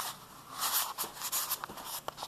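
Scratchy rustling from handling a handheld camera as it is swung around, with a few short sharp clicks near the end.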